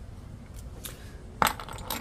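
Metal challenge coins clicking and clinking against one another and on a wooden tabletop as one is picked up. A few light clicks, then one sharp click about one and a half seconds in.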